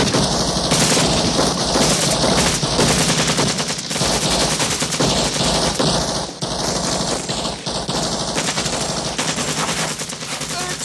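Sustained automatic fire from several M16-style rifles, the shots overlapping in a continuous rapid rattle with no pause.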